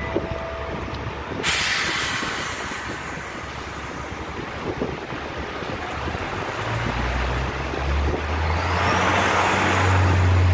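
City street traffic: a sudden loud hiss about a second and a half in that fades over a few seconds, then a heavy vehicle's low engine hum building and growing louder near the end.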